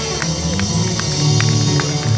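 A live country band playing: electric and acoustic guitars over a drum kit keeping a steady beat.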